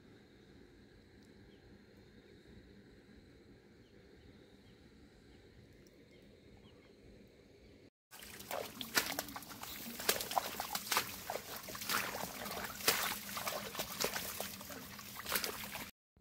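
Faint outdoor background for about eight seconds. Then loud, irregular crackling and rustling of dry grass and leaves, with footsteps squelching along a muddy path.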